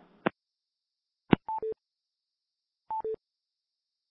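A sharp click, then a short two-note electronic beep falling from a high note to a low one, heard twice about a second and a half apart: conference-call line tones as the call is closed.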